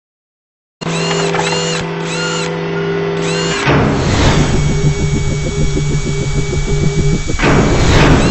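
Electronic intro sound design. It starts under a second in with a steady low drone and a few repeated chiming tones that bend up and down. About midway a whoosh comes in, then a fast buzzing pulse of about eight beats a second like a power tool, and a second whoosh near the end.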